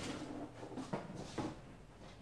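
Faint handling sounds of small plastic toy eggs and a plastic playset on a wooden table, with a couple of soft knocks about a second in.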